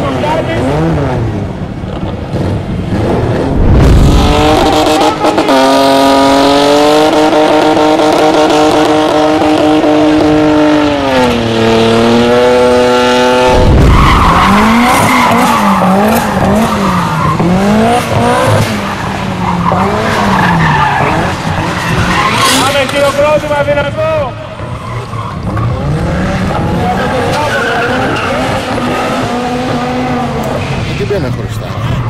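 A drift car's engine held at high revs for several seconds, its pitch falling away near the end. The revs then rise and fall about once a second as the car slides through the turns, over tyre squeal and skidding.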